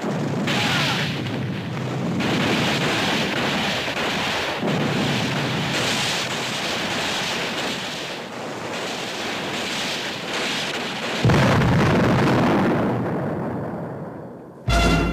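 Film battle sound effects of explosions and fire at a concrete pillbox: a continuous dense rumble with fresh blasts every second or two and a sudden loud one about eleven seconds in. It dies away near the end.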